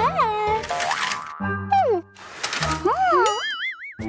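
Cartoon sound effects: several springy, boing-like swooping pitch glides and a quivering, warbling tone near the end, over bouncy children's background music.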